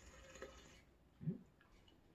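Faint sip of juice from a small cup, a soft wet draw lasting under a second. About a second in comes a brief low hum from a mouth.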